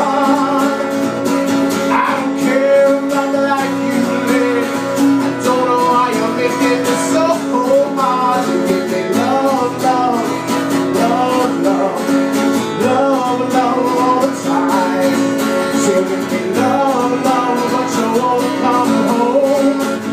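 Steel-string acoustic guitar strummed in a steady rhythm, with a man's voice singing a drawn-out, wordless-sounding line over it.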